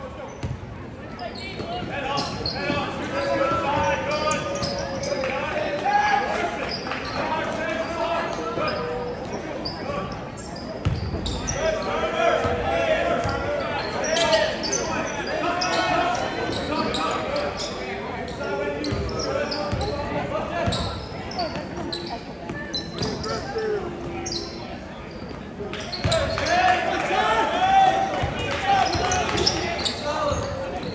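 Basketball dribbled on a wooden gym floor during live play, amid overlapping voices of spectators and players calling out, all echoing in a large gym; the voices grow louder near the end.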